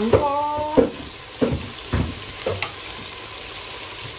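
Chicken pieces with tomato and onion sizzling as they sauté in a nonstick pot, with a few sharp knocks against the pot in the first half.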